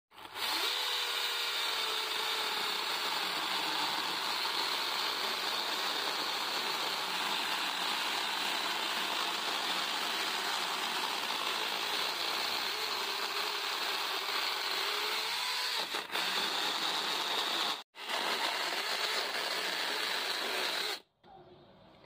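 Cordless 24-volt mini chainsaw cutting through a log: its electric motor and chain run steadily under load. The sound breaks off for an instant once and stops about a second before the end.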